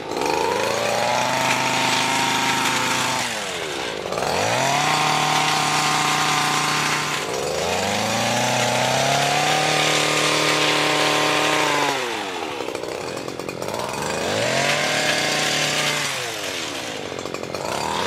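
Gas-powered brush cutter cutting down tall sun hemp stalks. Its engine revs up to full throttle, holds, then drops back toward idle four times, rising again near the end.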